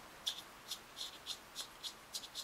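Fingers handling a fishing-reel side plate and rubbing over its knurled brass mag depth indicator: a faint string of short scratchy ticks, about four a second, unevenly spaced.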